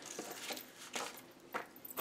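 Soft rustling of cotton trousers as hands smooth and pat them flat on a table, in a few short brushes.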